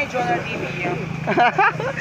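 Voices of several people chattering indistinctly, with a short burst of talk near the end, over a steady low hum.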